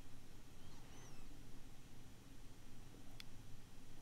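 Quiet room tone with a low steady hum, faint brief high chirps about a second in, and a single sharp click a little after three seconds.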